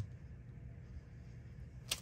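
Quiet handling of a glue stick over a paper journal page: a light click at the start and a short scratchy rustle near the end.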